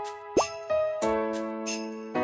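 Light children's background music of pitched notes changing every half second or so, with a quick rising pop-like sound effect about a third of a second in.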